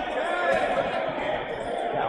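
Indoor dodgeball game: players' voices and calls echo around the gymnasium hall, mixed with rubber dodgeballs bouncing and thudding on the hardwood floor.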